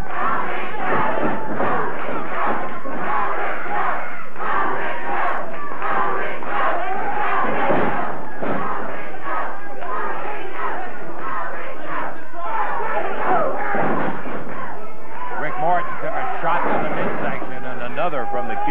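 Studio wrestling crowd yelling and shouting over a brawl in the ring, many voices at once, with a few dull thuds of bodies hitting the ring. The old videotape sound is muffled, with no high end.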